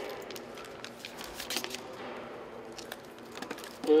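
Plastic packaging of AED electrode pads crinkling and tearing as the pouch is pulled open by its red handle and the pads are taken out: a string of small irregular crackles.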